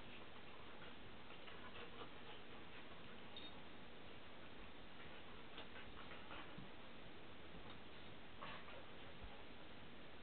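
Faint, irregular clicks and scuffles of two dogs moving about on a dog bed and hard floor, over a steady background hiss.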